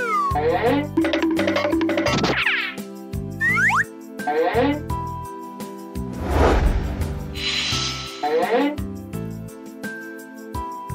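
Cheerful children's cartoon background music with comic sound effects: several quick springy boings sliding up and down in pitch, then a loud swelling whoosh about six seconds in.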